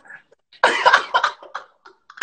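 Hard, cough-like laughter from a man, in one loud burst starting a little over half a second in and dying away by about a second and a half.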